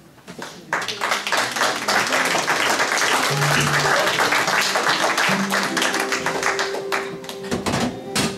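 Audience applause, starting about a second in and fading near the end, with a few held guitar notes ringing under it.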